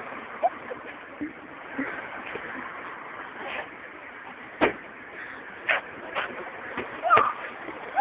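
Tennis balls being struck in street play: several sharp knocks in the second half, about a second apart, over a steady background of outdoor noise.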